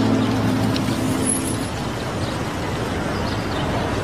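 Steady street traffic noise, an even hiss of road vehicles, under the last held notes of background music that fade out in the first second or two.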